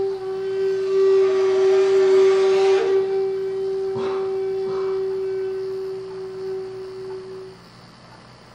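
Jinashi shakuhachi (Japanese bamboo flute) holding one long note, with a rush of breath in the first few seconds. The note fades out and stops near the end.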